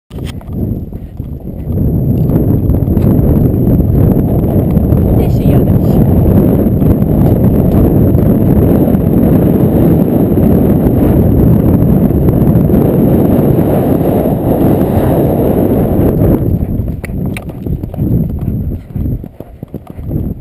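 Hoofbeats of a horse moving fast over a grassy, sandy track, heard from a rider's helmet camera. The hoofbeats are buried under heavy low wind rumble on the microphone from about two seconds in until about sixteen seconds. After that the rumble drops away and separate hoof strikes stand out.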